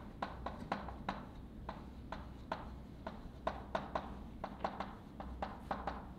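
Chalk writing on a blackboard: an irregular run of sharp taps, several a second, as letters are written.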